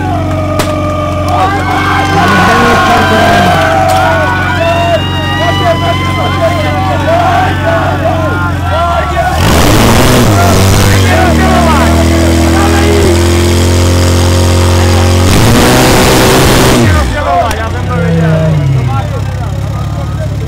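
Portable firesport fire pump engine running hard, its note changing about nine seconds in as it takes load, with two loud rushing bursts around the middle and near the end. Spectators shout and cheer over it throughout.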